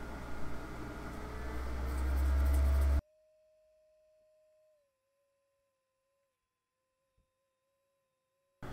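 Steady background room hum at the microphone, its deep rumble growing louder over about three seconds, then cut off abruptly about three seconds in. Near silence follows, with only a very faint steady tone.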